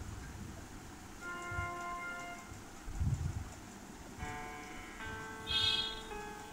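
Soft background music of sustained, chime-like keyboard chords, one chord coming in about a second in and another around four seconds. A few dull low thuds fall around the three-second mark.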